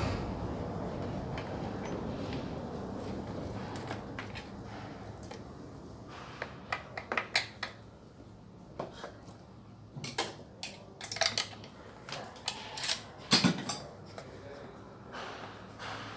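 Sharp clicks and knocks of a metal T-wrench and parts being handled on a Stihl MS 660 chainsaw as it is taken apart. The clicks come in quick runs from about six seconds in, the loudest near the end, after a steady rushing noise that fades over the first few seconds.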